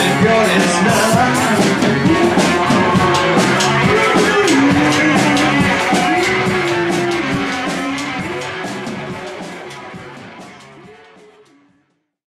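Rock band playing live with electric guitar, loud and dense, then fading out over the last four seconds to silence.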